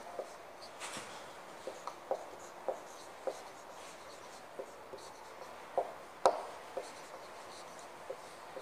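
Marker pen writing on a whiteboard: a string of short squeaks and scrapes of the tip as letters are formed, the sharpest stroke about six seconds in.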